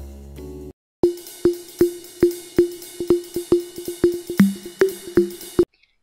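A short stretch of music cuts off, and after a brief gap a run of about fifteen sharp, pitched taps follows, two to three a second and slightly uneven, stopping just before the end.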